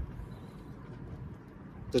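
Low, steady outdoor background noise in a pause between speech, with a voice starting just before the end.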